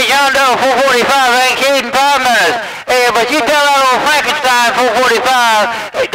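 A man's voice received over a CB radio and heard through the set's speaker, talking with a short pause about halfway through.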